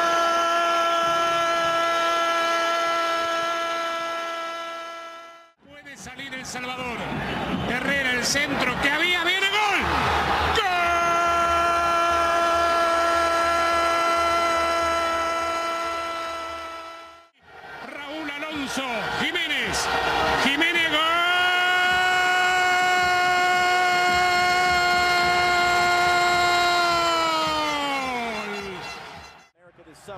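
A Spanish-language football commentator's drawn-out goal calls: three long held 'gooool' shouts, each sustained on one pitch for several seconds, with bursts of rapid excited speech between them. The last call slides down in pitch and trails off near the end.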